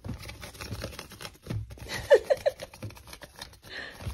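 Kittens scrambling and wrestling on a quilted pad, their paws and claws making a quick run of light scratches, pats and rustles. Three short squeaky sounds come about halfway through.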